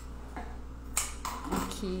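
Light handling clicks from a chocolate-strawberry bouquet on wooden skewers being worked by hand, the sharpest click about a second in, over a steady low hum; a woman begins speaking near the end.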